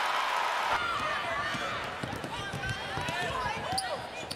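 A basketball is dribbled on a hardwood court, its bounces sounding over steady arena crowd noise.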